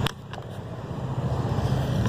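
Steady low hum of road traffic picked up by the Moto Z Play phone's microphone, with two sharp clicks in the first half second and a short drop in level before the hum builds back up.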